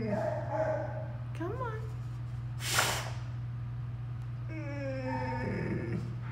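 A scared shelter dog, a Boxer–Plott hound mix, gives a short rising-and-falling whimper. Long, drawn-out wordless cooing tones come near the start and again near the end, with a short noisy burst about three seconds in. A steady low hum runs underneath.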